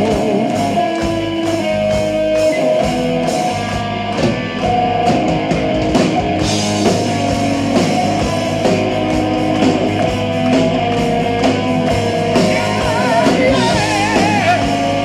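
Live heavy metal band playing loud: distorted electric guitars, bass and drum kit at a steady beat, with a held lead melody wavering in vibrato near the end.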